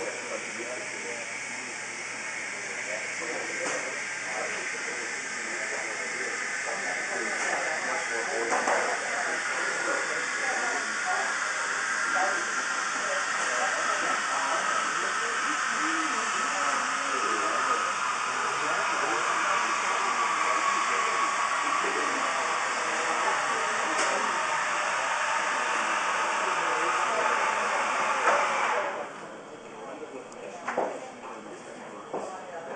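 A loud steady hiss with a faint tone that slowly falls in pitch. It runs under murmured voices and stops suddenly near the end.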